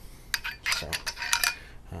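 Quick run of sharp glass-on-glass clinks and taps as a glass joint adapter is handled and fitted into the ground-glass joint of a glass beaker bong, clustered in the first second and a half.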